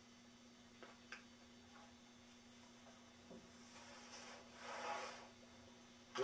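Scrapbook page being turned by hand: a soft rubbing rustle of the stiff album page lasting about a second, near the end, after a couple of faint clicks. Otherwise near silence with a steady low hum.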